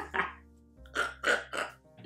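A woman laughing in a few short breathy bursts over soft background music.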